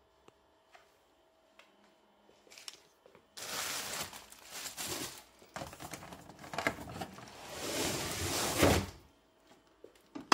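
A cardboard shipping box and the folded aluminium-and-wood picnic table inside it being handled: cardboard scraping and crinkling, with knocks as the table shifts against the box. It starts about three seconds in and stops about a second before the end.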